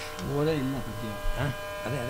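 A man's voice with a steady electrical buzz underneath.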